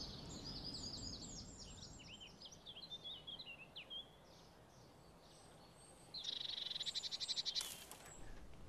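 Faint birdsong, a run of quick high chirps through the first half. About six seconds in comes a fast rattling trill lasting a second and a half, then a short click at the very end.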